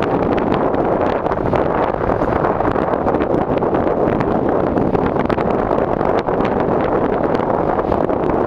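Strong wind buffeting the camera's microphone, mixed with breaking surf: a loud, steady rushing noise.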